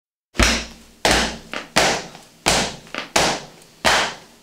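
Rock song opening on drums: loud hits about every 0.7 seconds, each ringing away, with a lighter hit between some of them, starting about a third of a second in.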